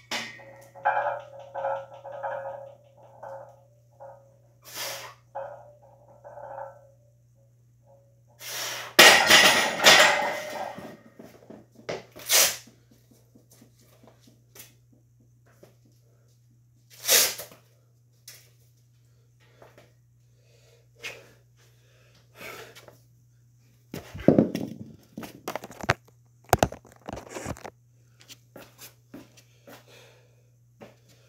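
Short, strained vocal sounds from a lifter under a heavy barbell, repeated every half second or so for the first several seconds. About nine seconds in comes a loud clatter lasting a couple of seconds, followed by scattered sharp knocks and clanks of gym equipment, most of them around the twenty-five second mark.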